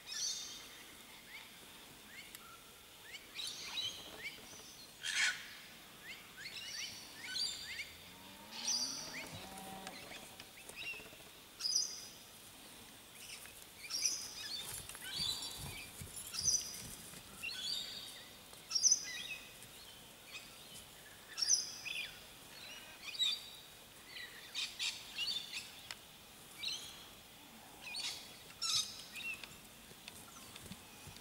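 Wild birds chirping and calling: short, high calls repeated over and over, some in quick runs of several notes.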